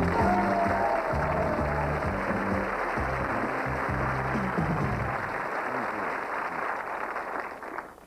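Television show theme music over studio audience applause. The music's bass line stops about five seconds in, and the applause fades away just before the end.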